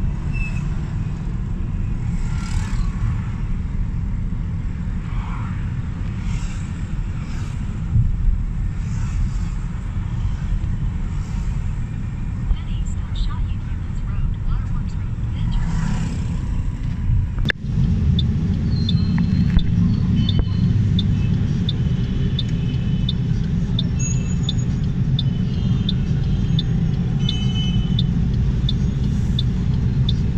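Steady low rumble of a car driving in town traffic, heard from inside the cabin. A little over halfway through, the rumble grows slightly and a regular run of short, high clicks, about two a second, begins and keeps going.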